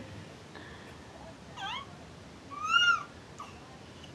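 A 7-month-old baby's two short high-pitched squeals: a wavering one about a second and a half in, then a louder one that rises and falls, just before the three-second mark.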